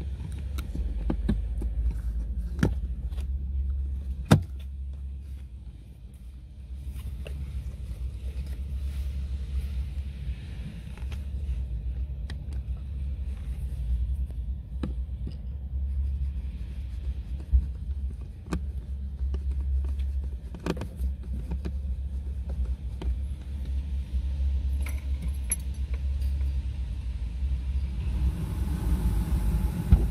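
Steady low rumble of a car engine running at idle, with scattered sharp clicks and metallic clinks from work on the car; a louder knock about four seconds in and another past the middle.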